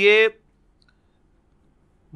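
A man's voice ends a word, then near silence with a single faint click a little under a second in.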